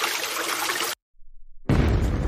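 Two stock sound effects for a ship hitting an iceberg: a noisy crash lasting about a second, then, after a short gap, a louder, deep explosion that carries on past the end.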